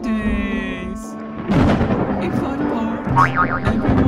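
Cartoon background music with a comic, wobbling, falling sound effect in the first second. From about a second and a half in, a louder stretch follows that includes a voice.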